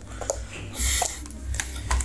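Handling noise: a brief rustle and a low rumble, with a small click about a second in, as a plastic plug is handled at a wall socket and the phone is moved.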